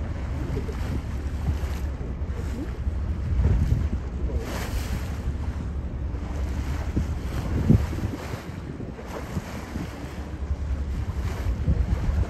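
Wind buffeting a phone microphone on a boat, a steady low rumble, over the wash of choppy bay water, with one brief louder bump about two-thirds of the way through.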